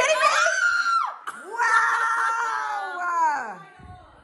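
Women squealing with excitement: a high squeal that slides up and holds for about a second, then a long drawn-out call that falls in pitch and fades out near the end.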